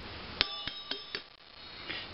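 A light strike followed by a short ringing ding with a few soft clicks, dying away after under a second.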